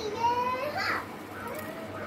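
Rose-ringed parakeet giving voice-like chattering calls: a held note, then a quick rising note, both within about the first second, and a fainter call near the end.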